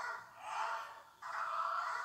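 Dog barking repeatedly at about two barks a second, the last bark drawn out longer, sounding thin as if played back through a TV speaker.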